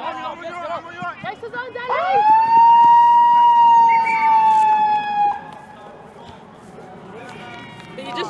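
A siren sounds one long note of about three and a half seconds. It swoops up at the start, holds steady, then sags slightly before cutting off. Players' voices come before it.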